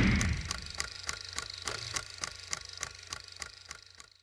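Logo-intro sound effect: the tail of a deep boom fades out, giving way to a rapid mechanical ticking, about five ticks a second, over a low hum, which dies away near the end.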